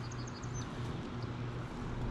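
Quiet riverside ambience: a steady low hum under a soft hiss, with a few faint, short high chirps near the start and again near the end.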